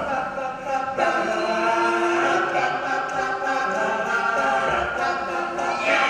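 Male a cappella ensemble of about ten voices singing in close harmony, holding sustained chords. A new chord comes in about a second in, and near the end a high voice slides up and back down.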